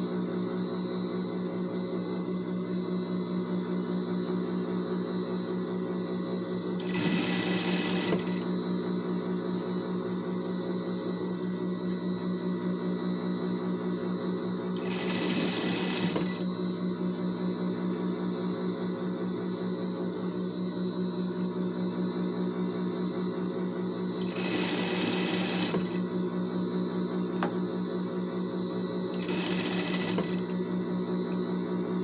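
Industrial straight-stitch sewing machine running steadily as it stitches a ruffled denim tier, a continuous motor hum, with a brief louder burst of noise four times.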